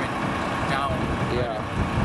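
A man's voice in short broken fragments, over a steady low outdoor rumble.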